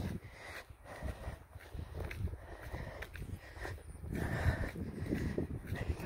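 Footsteps at a steady walking pace, with wind rumbling on the phone's microphone.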